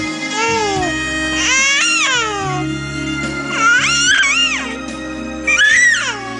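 An 11-week-old baby cooing: four high, rising-and-falling vocalizations of half a second to a second each, over background music with a sustained accompaniment.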